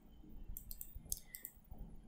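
A handful of faint, sharp clicks from a computer mouse and keyboard while code is selected and edited.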